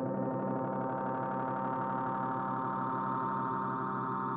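Ambient soundtrack drone: many steady held tones sounding together, with a faint regular wavering, like a sustained bowl or gong tone.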